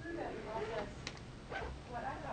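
Indistinct speech, words too unclear to make out, with short pitched phrases that rise and fall.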